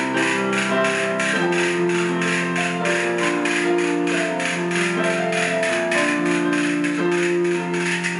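An electric keyboard plays sustained chords while castanets click along in a steady rhythm, several clicks a second.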